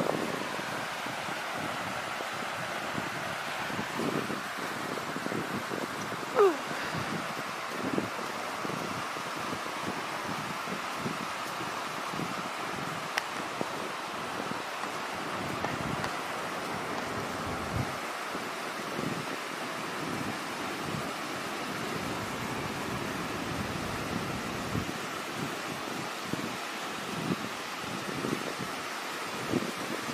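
Steady rush of a rain-swollen beck tumbling over small rocky cascades below a waterfall, with faint irregular low thumps throughout. A short, sharp, falling sound stands out about six seconds in.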